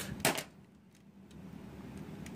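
Hard plastic Lego parts clicking as a brick bullet is pushed by hand into a Lego rubber-band gun's feed mechanism: a few sharp clicks in the first half second, then a couple of faint ticks.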